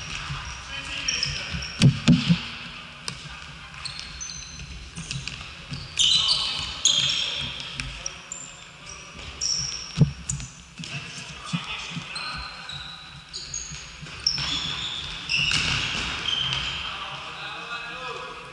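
A futsal ball being kicked and thudding on the hard court, echoing in a large sports hall. Sneakers squeak on the floor and players shout. The sharpest knocks come as a pair about two seconds in and again about ten seconds in.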